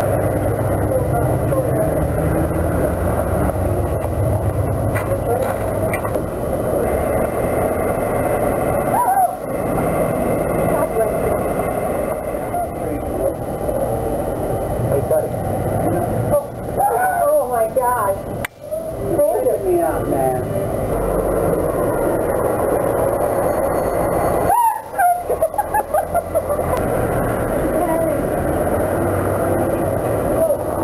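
Outdoor background noise with indistinct voices and chatter, interrupted by a few abrupt cuts.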